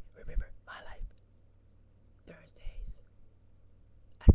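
A woman whispering close to the microphone in two short phrases, one in the first second and another between two and three seconds in.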